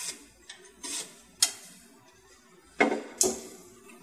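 A pencil scratching marks along a speed square on a pine board, in two short strokes, with a sharp tick about one and a half seconds in. Then two wooden knocks as the board is shifted on the workbench, near the end.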